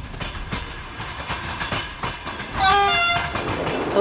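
Passenger train running on the rails, heard from inside the carriage: a steady rumble with wheel clicks over the rail joints. About two-thirds of the way in, a train horn sounds for under a second, its pitch stepping slightly lower partway through.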